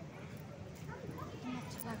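Indistinct background chatter of several people's voices, with no clear words.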